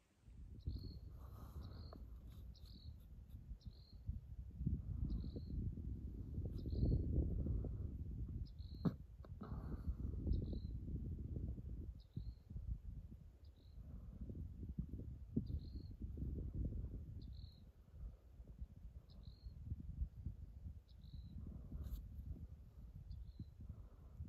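Wind rumbling and buffeting on the microphone, with a short high chirp repeating about once a second throughout, and a single sharp tap near the middle.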